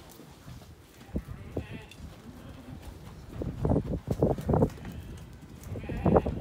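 Ewe lambs crowded in a working alley, making sheep sounds as one is caught and held. There is a sharp knock about a second in and a louder run of short sounds from about three and a half seconds.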